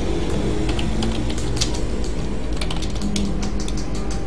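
Typing on a computer keyboard: irregular key clicks over a steady low hum.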